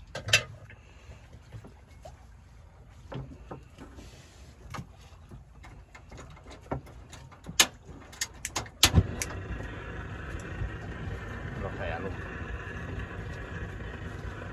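Sharp clicks and knocks scattered through the first nine seconds. Then a steady, even engine drone sets in suddenly and runs on: the fishing boat's engine.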